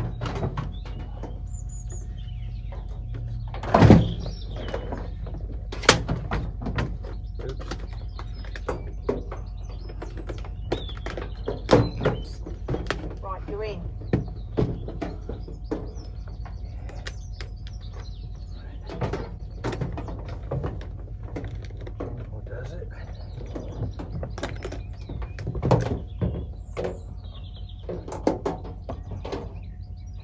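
Knocks, bumps and scrapes of a washing machine being manhandled across a narrowboat's bow deck and through its front doors. The loudest thud comes about four seconds in, with scattered bumps after it.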